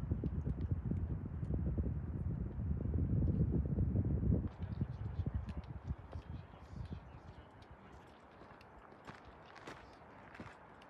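Wind buffeting the microphone in low, rumbling gusts, cutting off abruptly about four and a half seconds in. After that come quieter, scattered crunching steps on a rocky trail.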